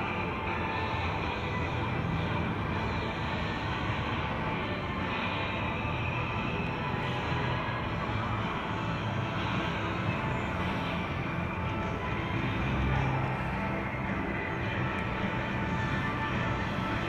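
Steady outdoor city ambience: a continuous low hum of distant traffic, with faint music in the background.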